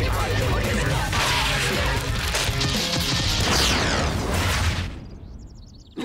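A rock band playing loudly, with a pounding drum beat and cymbal crashes, then cutting out about five seconds in and dying away quickly.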